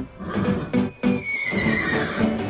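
A horse whinnying, a high call that falls in pitch in the second half, over background music with a steady beat of plucked notes.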